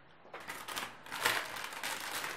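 Rustling and scraping of packaging being handled and pried open, starting about a third of a second in and carrying on as a rough, crinkly rustle.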